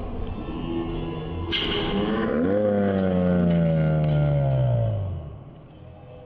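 Slowed-down audio under a slow-motion dunk. A shout is stretched into one long, deep, drawn-out voice that rises, then slides slowly down in pitch and fades out about five seconds in.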